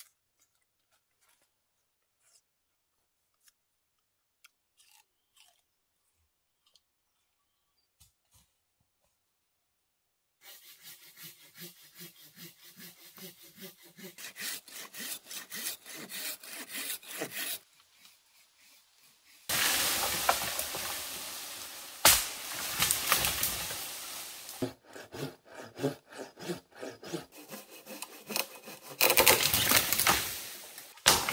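Near silence for the first third, then a hand saw cutting wood in quick, rhythmic strokes; it pauses briefly and starts again louder for the rest.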